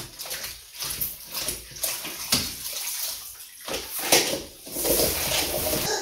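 Floor mop sloshing and splashing in a bucket of dirty mop water, in uneven bursts that grow louder and more continuous near the end.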